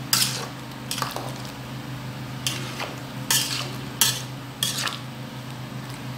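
Slotted metal spatula scraping and knocking against the side of a large metal cooking pot while stirring sliced plantain and potato in a sauce: about six separate scrapes, over a steady low hum.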